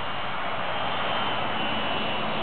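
Micro RC helicopter, a UH-60 Black Hawk scale model, lifting off and hovering: its small electric motors and rotors give a steady high whine over a hiss.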